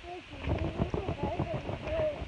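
Quick, irregular thumps and knocks from bouncing on a trampoline mat while the filming phone is jostled.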